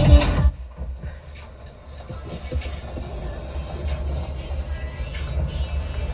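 Bass-heavy pop-electronic music playing through a Mazda 6's factory Bose speakers from an Android head unit. It drops low about half a second in, then rises steadily as the volume is turned up.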